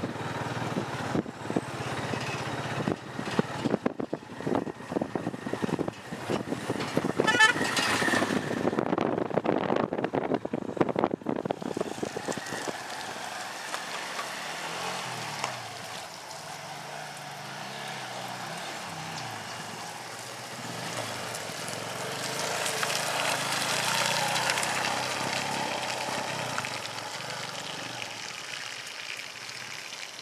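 Motorcycles and cars driving past on a dirt road, engines running. There is a short horn toot about seven seconds in, and one vehicle swells louder as it passes in the second half.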